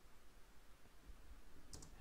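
Near silence: faint room tone, with one faint click near the end.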